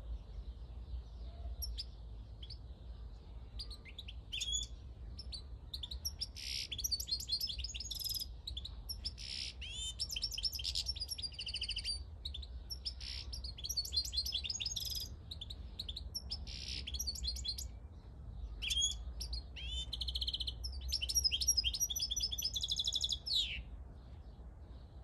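Caged wild-caught European goldfinch singing: fast twittering phrases of quick high notes, trills and buzzy notes, starting about four seconds in and going on in long bursts with short breaks until just before the end. A steady low rumble runs underneath.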